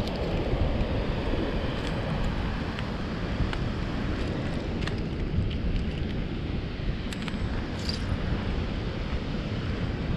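Wind buffeting the microphone in a steady low rumble, with a few faint clicks of shells being picked through by hand.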